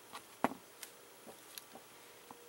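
A few light clicks and taps as a small clay-filled mold is handled and set down on the table, the loudest tap about half a second in.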